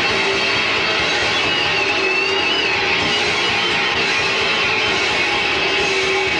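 Death/thrash metal band playing live: distorted electric guitars, bass and drums in a dense, even wall of sound. A high note bends up and down about two seconds in.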